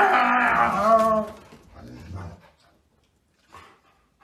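Golden retriever giving a long, wavering vocal grumble that stops about a second and a half in, followed by a short, lower growl.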